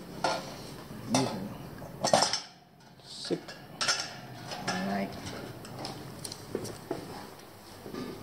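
Sabian cymbals and their stand hardware being handled and fitted onto a drum kit's cymbal stands: scattered metallic clinks and knocks at irregular intervals.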